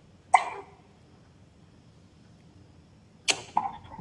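A brief, sharp vocal sound from a person, cut off quickly, about a third of a second in. A second short, sharp burst comes near the end, just before speech resumes. Faint room noise lies in between.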